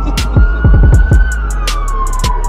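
A siren wailing, its pitch rising slowly and then falling, heard over a hip-hop beat with deep bass kicks and sharp hi-hat and snare hits.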